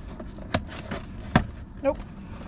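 Rummaging through a paper takeout bag: rustling of the paper with two sharp clicks of packaging knocking, the second one louder.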